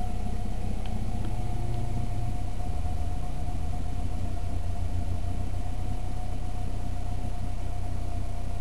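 1979 Volvo 240 engine idling steadily with the hood open, running with an HHO electrolysis booster feeding its air intake. A low, even rumble of firing pulses, with a thin steady whine over it.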